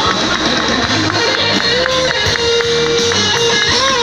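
Live band playing loud dance music: electric guitar over drums and keyboard, with a long held note in the middle.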